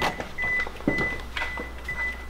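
A Toyota's interior warning chime beeping steadily, a short high tone about twice a second, as the driver's door is opened with the engine running and lights on. A click near the start and another just under a second in come from the door.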